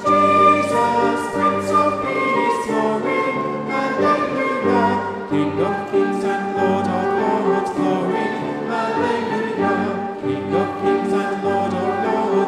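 Congregation and choir singing a worship song together, accompanied by a flute and sustained low bass notes.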